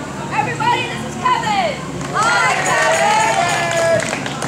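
Several voices whooping and calling out over one another in rising-and-falling cries. They grow louder and denser about halfway through, with one long held call near the end.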